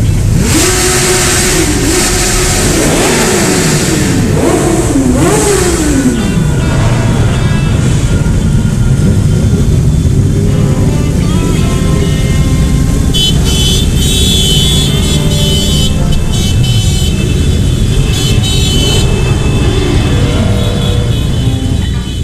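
A group of motorcycles riding together, their engines revving up and down several times in the first six seconds inside a concrete underpass, then running steadily.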